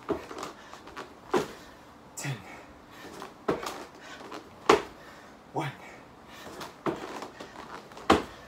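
A man breathing hard through a bodyweight floor exercise: a sharp exhale or grunt about once a second, some of them voiced.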